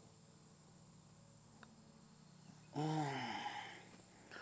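A man's drawn-out groan, falling in pitch, about three-quarters of the way in, after a stretch of faint outdoor background. It is a golfer's frustrated reaction to a putt he left short.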